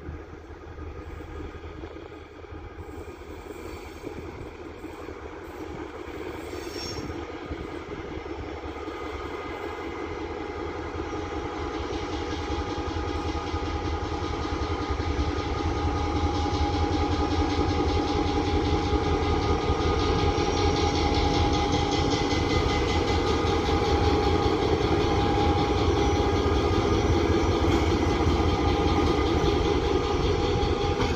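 EMD G26C diesel-electric locomotive running, its engine rumble carrying a steady whine. It grows louder over the first half as the locomotive draws near, then stays loud.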